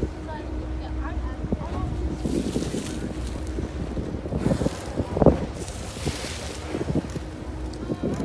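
Steady low drone of a whale-watch boat's engine, with wind gusting across the microphone and people talking indistinctly in the background.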